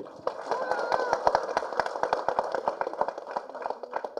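Audience applauding: many scattered hand claps running through the pause, with crowd voices faintly underneath.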